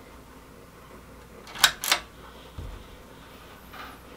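Two sharp clicks about a quarter second apart from the pull-chain switch of a bare-bulb attic light being pulled, turning the light on. A soft low thump follows about a second later.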